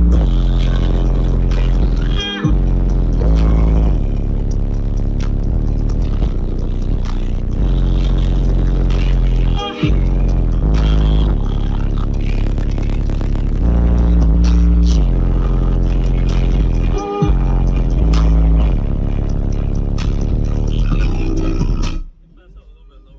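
Bass-heavy music played at high volume through a Chevrolet Tahoe's 100,000-watt car audio system, heard from inside the cabin, with deep sustained bass notes. It breaks off briefly three times and cuts off suddenly at the end.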